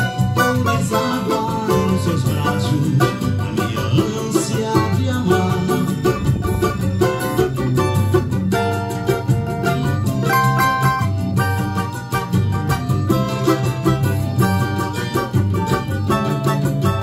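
Cavaquinho playing a fast plucked melody over a backing track with a steady bass line.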